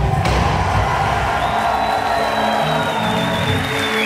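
Live metal band letting a final held chord ring out as a song ends, with the crowd cheering. A high thin whistle-like tone comes in partway through and slides down near the end as the chord stops.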